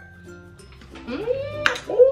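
A person's rising, then held, high-pitched 'oooh' wail about a second in, with a short sharp hiss in the middle: a reaction to the sourness of a Warhead candy.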